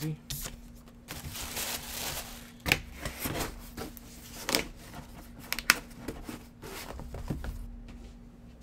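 Tissue paper rustling and crinkling as it is pushed into a cardboard box, then the box and its lid knocking sharply several times as the box is closed and handled.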